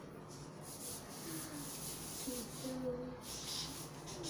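Felt-tip marker writing digits on a paper chart: short, scratchy rubbing strokes of the tip on paper, starting and stopping as each figure is drawn.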